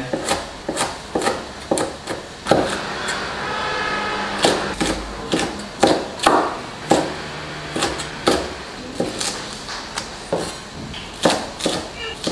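Chinese cleaver chopping vegetables on a wooden cutting board: irregular sharp knocks as the blade strikes the board, cutting green pepper and scallions.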